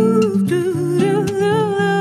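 A woman humming a long, wavering wordless melody over plucked acoustic guitar notes, a voice-and-guitar MPB arrangement.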